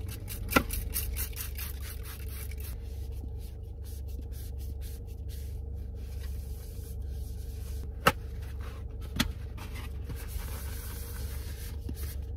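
A paper towel rubbing and scraping around the inside of a bowl as it is wiped clean. A few sharp clicks stand out: one about half a second in, and two more around eight and nine seconds in. A steady low hum runs underneath.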